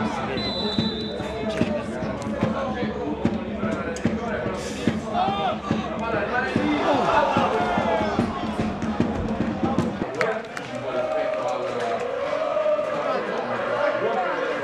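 Voices mixed with music, with frequent sharp knocks throughout.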